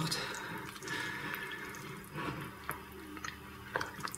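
Wooden spoon stirring thick, wet fruit quark in a glass bowl: soft squelching and dripping sounds, with a few light clicks of the spoon against the bowl in the second half.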